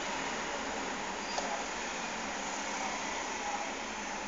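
Steady background hiss of room noise, with one faint click about a second and a half in.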